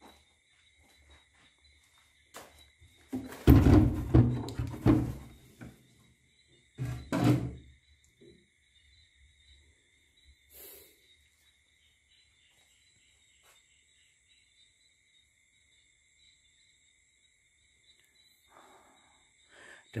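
Old wooden door being pushed open: loud thunks and scrapes of the wood about three to five seconds in, another about seven seconds in, then it goes quiet.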